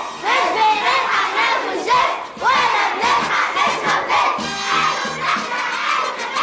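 A crowd of young schoolgirls chanting protest slogans together in loud, rhythmic shouts.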